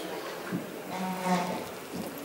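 A person's voice making a short drawn-out hum-like sound, held on one pitch for under a second, after a light click.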